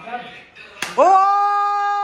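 A single sharp slap of hands, then a man's long, steady shout of "ohh" held at one pitch.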